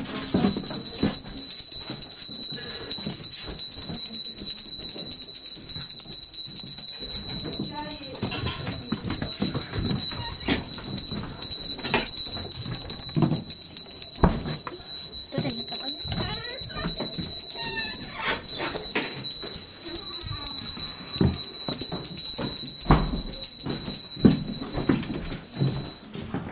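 A small hand bell rung without pause, a steady high ringing with quick repeated strikes, calling people to prayer. The ringing fades a little near the end.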